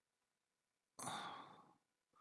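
A person breathing out once about a second in, fading away over under a second, after near silence.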